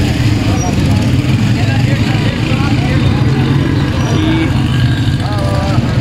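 A motor vehicle's engine running close by, a steady low rumble, under the murmur of voices in a crowded street.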